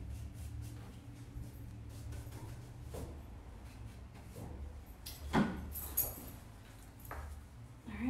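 Soft paintbrush strokes on a wooden drawer front over a low steady hum, with two short sharp knocks about five and six seconds in.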